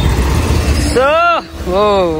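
Low rumble of a motor vehicle running close by for about a second, then a man's voice calling out twice.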